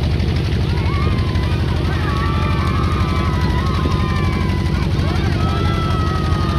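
A boat engine running steadily with a fast low throb, with people's drawn-out calls and voices over it.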